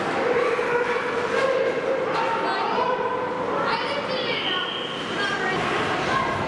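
Indistinct shouting voices of players and spectators echoing in an ice hockey rink during play, over steady arena background noise.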